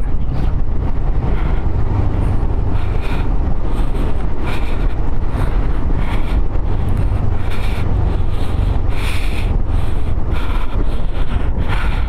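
Wind rushing over the microphone of a motorcycle on the move: a steady, loud rush with a deep rumble underneath.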